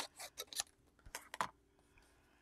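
Scissors snipping through sublimation paper in a quick run of short clicks, with a few sharper clicks a little past a second in, then stopping.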